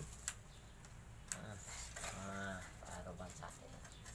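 Light clicks and knocks of a miter saw's metal and plastic parts being handled during setup, two sharp clicks in the first second and a half. A short low hum sounds a little past the middle.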